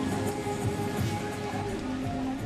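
Music playing loudly from a shop's loudspeaker.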